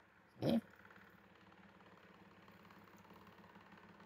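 A single short vocal sound from a person, about half a second in, such as a brief grunt or throat noise, followed by faint steady room hum.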